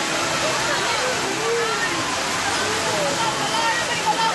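Steady rushing and splashing of fountain water in the ride's pool, with many overlapping voices of a crowd of adults and children chattering over it.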